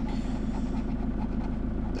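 A scratchcard's panel being scratched off by hand, a rapid steady scraping, over a continuous low drone.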